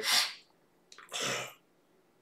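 A man's breath sounds between phrases: a breathy puff right at the start, then a second, sharper breath about a second in.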